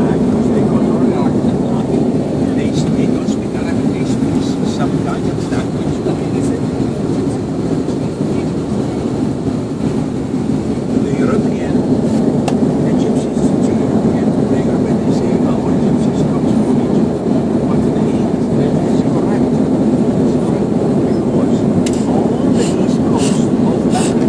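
Steady jet-engine and airflow noise heard inside an airliner cabin during the climb after takeoff: a deep, even rumble that holds level throughout.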